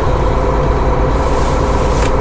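Volvo semi truck's diesel engine running steadily as the truck rolls slowly, heard from inside the cab. A hiss builds over the second half.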